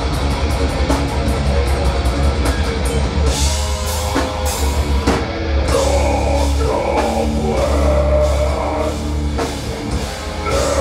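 A heavy metal band playing live at full volume: fast drumming over distorted electric guitars and bass. A vocalist comes in over the band about halfway through.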